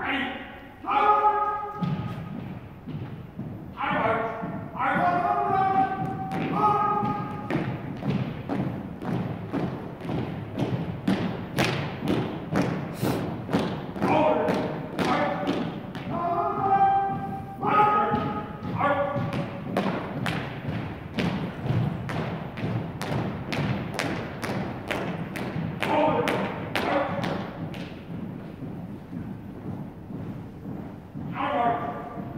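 A color guard marching in step on a hardwood gym floor, their boots striking in a regular thud about twice a second. Several drawn-out drill commands are called out between the steps.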